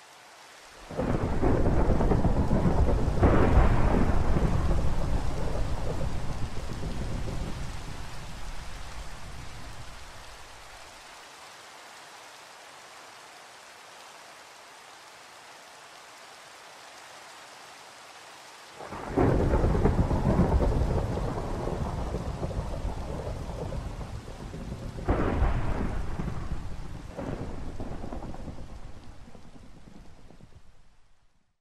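Thunderstorm: steady rain with two long rolls of thunder, the first starting about a second in and dying away over several seconds, the second starting about two-thirds of the way through, with two more cracks of thunder near the end.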